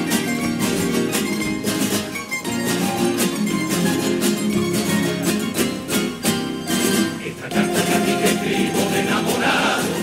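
Spanish guitars and bandurrias of a Cádiz carnival coro playing an instrumental passage of a tango, with dense, quick plucked strumming.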